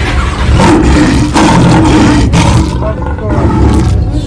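A lion growling low while biting down on a man's finger through a chain-link fence.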